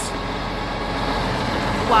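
Heavy-duty tow truck's diesel engine idling, a steady hum. A voice says 'wow' right at the end.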